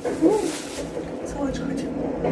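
A short voiced sound that rises and falls in pitch, then quiet voices talking, with light crinkling of a thin plastic produce bag being handled.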